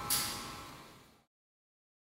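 Ensemble music ending on a sudden bright crash from the drum kit's cymbal over a couple of held notes. The sound fades quickly and cuts to silence just over a second in.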